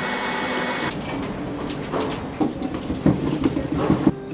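An electric coffee grinder's motor runs with a steady whirr and stops about a second in. Light knocks and clinks of coffee-brewing gear being handled follow.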